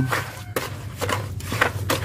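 Masonry trowel stirring and scraping through damp sand-cement mortar in a bucket, making a run of irregular scrapes and knocks as water is worked into the mix.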